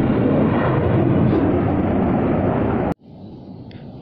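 Jet aircraft flying overhead: loud, steady jet noise that cuts off suddenly just under three seconds in, leaving quiet outdoor background.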